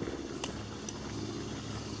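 A motor running with a steady low hum, with a couple of faint clicks about half a second and a second in.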